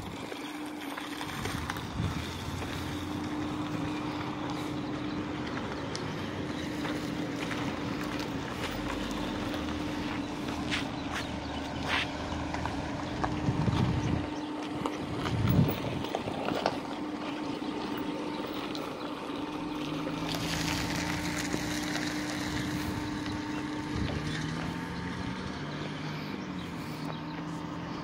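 A vehicle engine idling with a steady hum, under outdoor wind and handling noise, with a few louder low rumbles around the middle. A lower engine note shifts in pitch over the last third.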